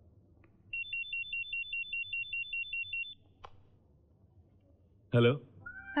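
Electronic telephone ringing: a rapid warble between two high pitches for about two and a half seconds, then stopping. A single click follows, and near the end a woman answers with "hello".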